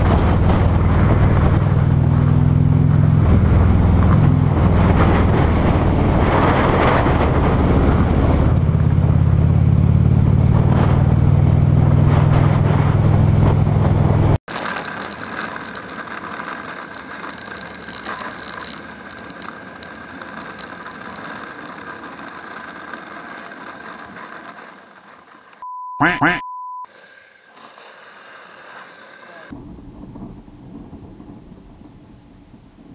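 Cruiser motorcycle engine running steadily at highway speed, loud and deep, with wind noise on the helmet microphone; it stops suddenly about 14 seconds in and gives way to a much quieter motorcycle ride with wind. A short high beep sounds near the end.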